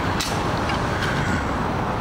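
Steady road-traffic rumble at a city intersection, with a short click about a quarter second in.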